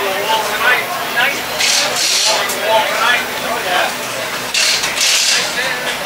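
Background voices of people talking nearby, with two short bursts of hissing, one about a second and a half in and one near the end.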